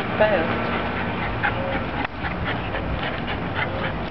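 A dog gives one short, falling whine about a quarter second in, over a steady outdoor background hum, followed by scattered light ticks in the second half.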